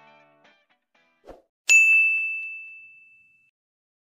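A single bright ding of a notification-bell sound effect, struck about two seconds in and ringing out for over a second as it fades.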